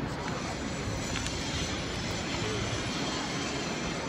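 Steady outdoor noise of a busy city square, an even rushing wash with a low rumble underneath.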